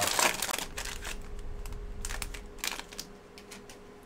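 Trading-card pack wrapper crinkling and tearing as the pack is ripped open. The crackles are loudest at first and thin out.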